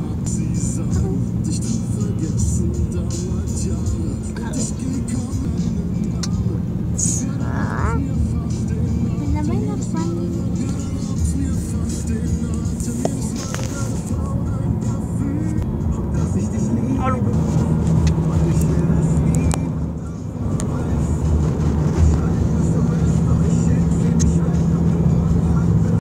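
Car cabin noise heard inside the car: a steady low drone of the running engine and the road, with music and a voice over it.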